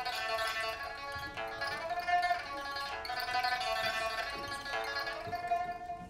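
Pipa music: a melody of long held notes that change about every second and a half.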